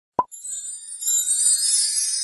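Logo sting sound effect: a short pop, then a high tinkling shimmer that swells about a second in.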